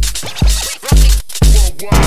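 Live-coded electronic dance music: a heavily distorted four-on-the-floor kick drum at about two beats a second, with fast hi-hats and short gliding synth tones between the kicks.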